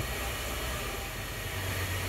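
Steady low hum and hiss of workshop background noise, with no distinct events.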